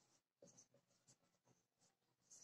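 Very faint strokes of a marker writing on a whiteboard, a series of short scratchy squeaks as a word is written out.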